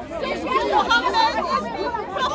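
Speech only: several people talking over one another at close range.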